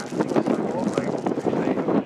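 Spectators' voices: several people talking close by at once.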